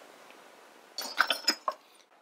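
Metal kitchen utensils clinking against each other as a whisk is picked out from among them: a short cluster of sharp clinks about a second in.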